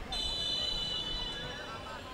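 A referee's whistle blown in one long, steady blast lasting about a second and a half, signalling the kick-off.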